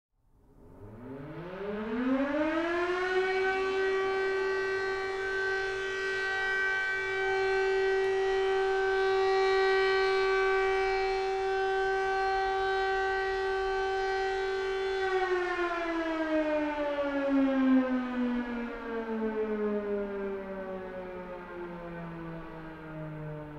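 A siren sounding. Its pitch rises quickly over the first couple of seconds and holds one steady tone. From about fifteen seconds in it slowly winds down in pitch.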